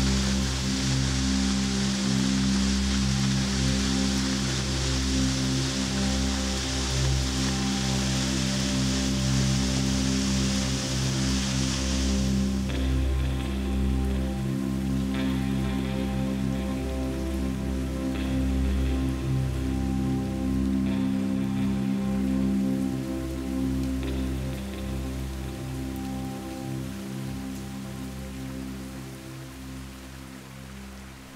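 Waterfall rushing, which cuts off abruptly about twelve seconds in, over slow ambient background music with long held low notes that carries on and fades toward the end.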